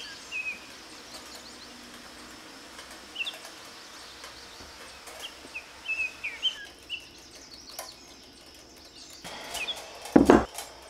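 Small birds chirping: short, quick downward-sliding chirps in scattered bursts, with a cluster of them about halfway through, over a faint steady hiss.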